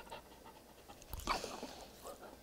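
A dog panting close by, with one louder breath a little over a second in, while hands handle its head and face.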